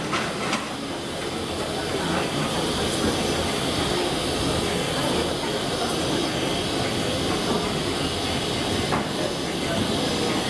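GWR Castle class steam locomotive No. 5043 standing at rest, giving off a steady hiss of steam.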